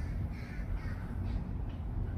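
Faint bird calls over a steady low background rumble.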